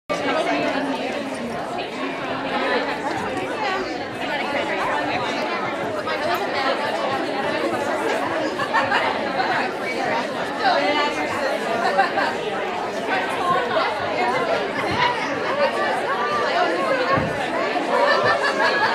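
Crowd chatter in a large room: many people talking at once, with no single voice standing out.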